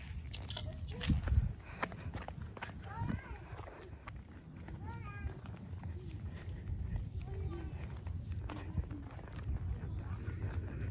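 Footsteps on a concrete road while walking with a handheld phone, over a steady low rumble. Two short runs of high, chirp-like calls come about three and five seconds in.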